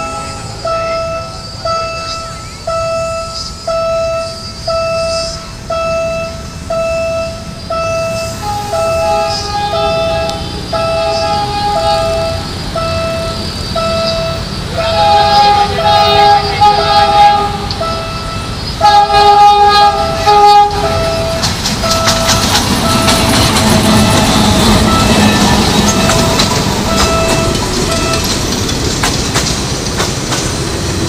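Level-crossing warning bell pulsing steadily, about one and a half strokes a second, as a Philippine National Railways train approaches and sounds its horn in several blasts. From about twenty seconds in the train passes close by, its wheels and cars rumbling loudly over the rails.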